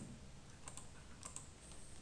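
Faint computer keyboard keystrokes: a handful of scattered key presses.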